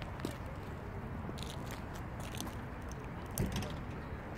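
Footsteps crunching irregularly over a steady low outdoor rumble, with a few louder thumps about three and a half seconds in.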